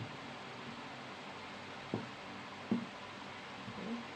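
Printed fabric being folded and smoothed by hand on a work table, with two brief soft thumps around the middle, over a steady room hiss.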